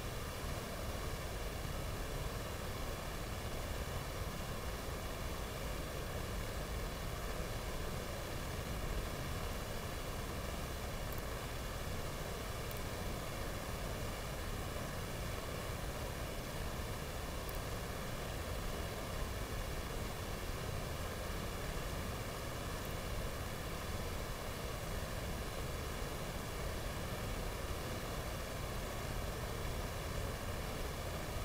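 Steady hiss with a low rumble beneath it, unchanging throughout, with no distinct knocks or voices standing out.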